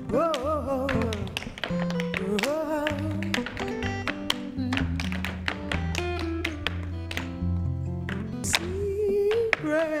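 Tap shoes of two dancers striking a stage floor in quick, sharp rhythmic clicks, over a recorded song with sung phrases near the start and end.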